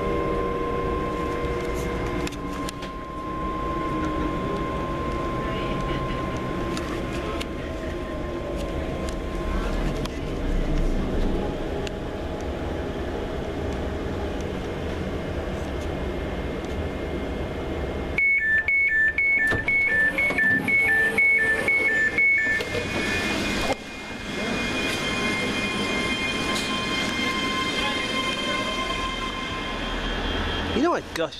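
Onboard a ScotRail Class 385 electric train: a steady running hum with thin whining tones. About eighteen seconds in, the door warning sounds for about four seconds, about eight beeps alternating between two pitches.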